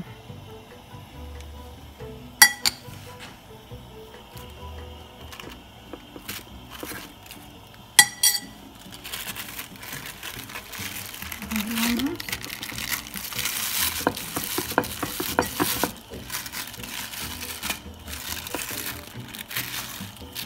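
A metal spoon clinks twice against a glass bowl while shrimp filling is scooped out. From about nine seconds in, a plastic sheet rustles and crinkles as a masa tortilla is folded over the filling.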